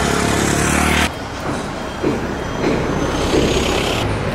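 A motor vehicle engine running close by among outdoor street noise, cut off abruptly about a second in; after that a quieter outdoor background of traffic-like noise.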